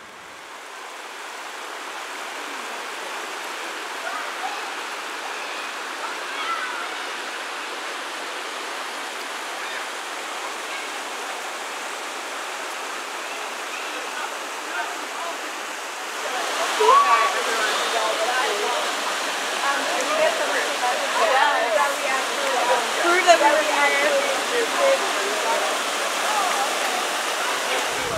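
Water rushing steadily down a natural rock waterslide. The sound fades in over the first couple of seconds. From just past the middle, people's voices and shouts rise over the water.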